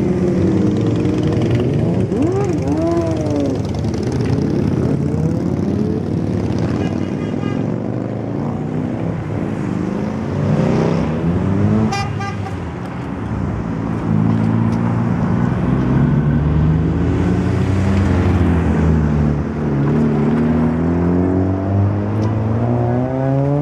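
Motorcycles and then cars pulling away one after another, engines revving and passing close by, with two short horn toots, about seven and twelve seconds in.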